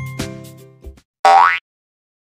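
A children's music jingle of struck, ringing notes dies away in the first second. About a second later comes a short cartoon sound effect with a quickly rising pitch, like a boing, and then silence.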